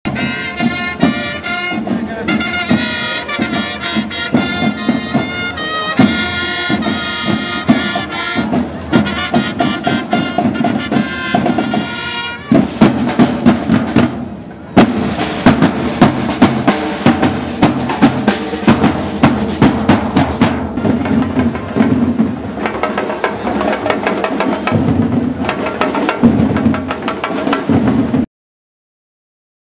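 A trumpet fanfare from a costumed marching band over drumming, and about twelve seconds in the trumpets drop out, leaving the band's drums playing a fast, steady marching beat.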